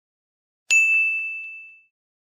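A notification-bell sound effect for the subscribe button: a single bright ding about two-thirds of a second in, ringing and fading away over about a second, with a few faint clicks under it.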